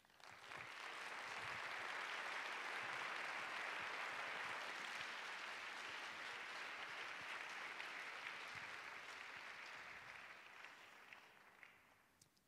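Large audience in an auditorium applauding: the clapping builds within the first second, holds steady, and dies away near the end.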